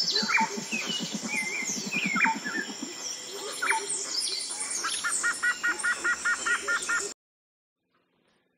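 Several birds calling together: whistled chirps and downward-sliding calls, a low, rapid pulsing call through the first three seconds, and a fast, even series of about five notes a second from about five seconds in. The recording cuts off suddenly about seven seconds in.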